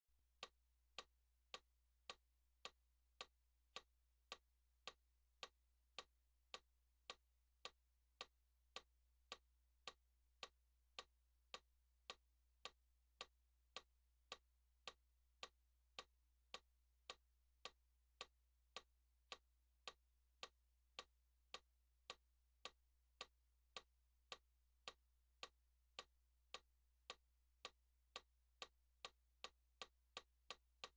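Electronic metronome clicking evenly at a little under two clicks a second, faint, over a low steady hum.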